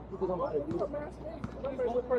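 Overlapping voices of people talking courtside, with a basketball bouncing on the outdoor court: a couple of sharp thumps, about three-quarters of a second and a second and a half in.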